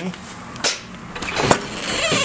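Two knocks from the front entry door being handled, the second one sharper and louder about a second later.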